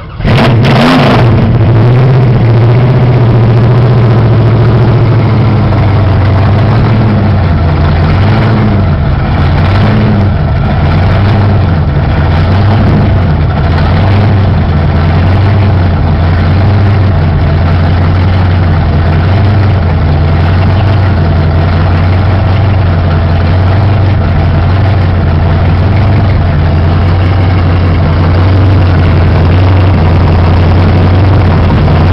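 1970 Dodge Charger movie car's V8 engine firing up with a loud burst, blipping once about a second in, then settling into a steady idle through its rear exhaust.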